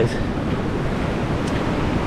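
Steady rush of ocean surf washing on the shore, with wind on the microphone.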